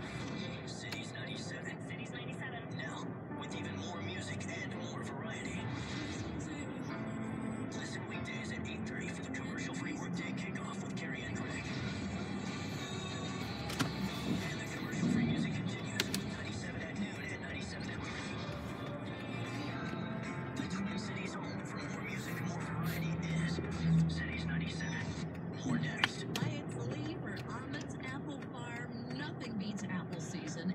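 Music with singing playing from a car radio station, heard inside the car's cabin.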